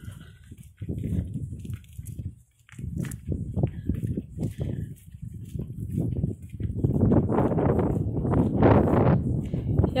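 Footsteps of a person walking on a concrete sidewalk, heard close on a handheld camera's microphone as a run of dull steps a few times a second. They thin out briefly about two and a half seconds in and grow louder near the end.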